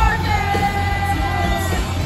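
Pop-punk band playing live through a concert hall's PA, electric guitars and drums under a voice that holds one long sung note for about a second and a half.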